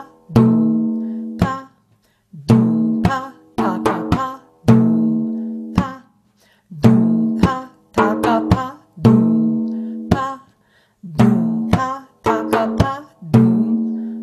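Hand-played frame drum in the maqsum rhythm at a slow tempo, with a taka filling the first space. Deep ringing doum strokes at the rim alternate with dry pa pops toward the middle and quick taka taps of the ring fingers. The pattern repeats about every two seconds.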